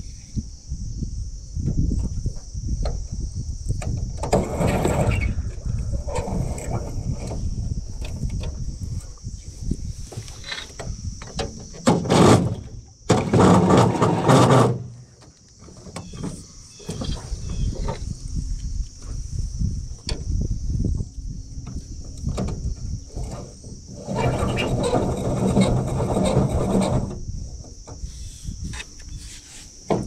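Outdoor ambience on a small boat: a steady high insect buzz with low wind rumble on the microphone, broken by louder rustling and handling noise about a third of the way in, in the middle and near the end.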